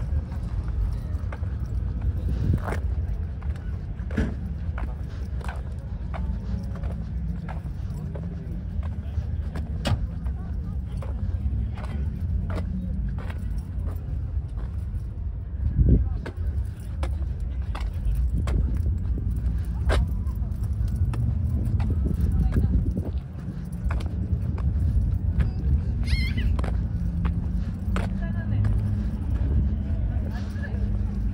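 Background voices of people over a steady low rumble, with scattered short clicks and one louder thump about sixteen seconds in.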